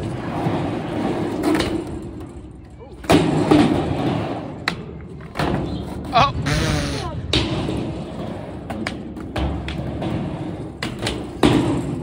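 Skateboard wheels rolling on a skatepark ramp, then a loud board slap about three seconds in and a string of clacks and thuds as the board and rider hit the ramp during a bailed flip trick. A short voice cry is heard around the middle.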